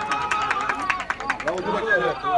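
Football spectators shouting, with a fast run of sharp claps or beats, about a dozen a second, that stops about a second and a half in.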